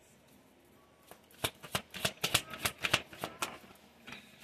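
A deck of oracle cards being shuffled by hand: after about a second of quiet, a run of quick, uneven card snaps for a couple of seconds.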